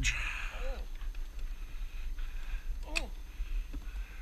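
Short exclamations from a man's voice, one under a second in and an "oh" about three seconds in, over a steady low rumble.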